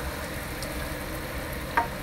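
Chicken pieces cooking in liquid in a Red Copper ceramic non-stick square pan on high heat, a steady sizzle as chopped tomatoes are scraped in from a bowl with a wooden spoon, with one short knock near the end. The pan is stewing the chicken in its juices rather than browning it.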